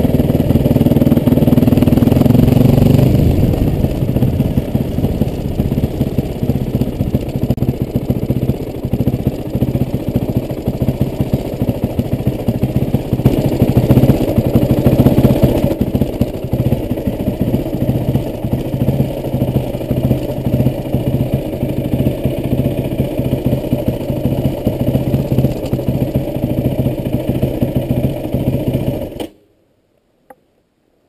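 Yamaha WR450F's single-cylinder four-stroke engine running as the bike is ridden. It pulls hard for the first few seconds, then runs at low revs with a rapid pulsing beat and a brief rise in revs about halfway, and stops abruptly near the end.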